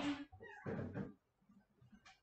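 A short, high, pitched call like a cat's meow, heard once about half a second in, just after a spoken word trails off.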